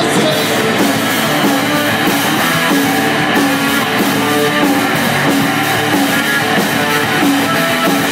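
Post-punk rock band playing live: an electric guitar riff repeating over a drum kit with cymbals, in an instrumental stretch without vocals.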